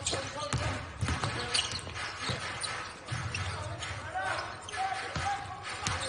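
A basketball being dribbled on a hardwood court, with irregular sharp bounces, over a low arena hum and faint voices on the court.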